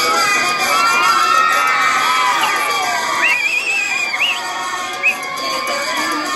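A crowd of schoolchildren cheering and shouting, many high voices overlapping. One shrill, wavering cry stands out about three seconds in.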